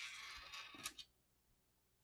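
Faint handling noise of a small 3D-printed plastic plate being held and fitted to a metal camera rig, with a couple of small clicks in the first second, then near silence.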